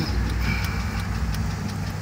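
Car engine idling while stopped, heard from inside the cabin as a steady low rumble.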